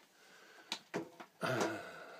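Quiet room tone, then two brief clicks about a second in, followed by a man's hesitant 'uh' near the end.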